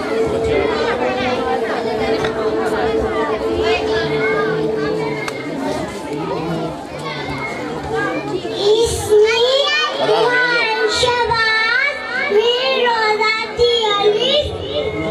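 A young child reciting an Islamic prayer (dua or kalma) into a microphone, the high child's voice amplified over a PA in a large hall. The recitation rises and falls in a sing-song chant and grows clearer and louder in the second half.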